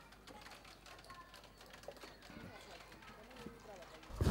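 Faint outdoor background sound with distant, indistinct voices and a few small ticks; nothing loud stands out.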